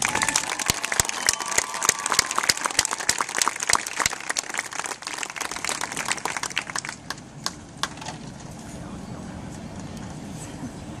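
Crowd in the stands applauding, many close hand claps that thin out about seven seconds in, leaving a murmur of talk.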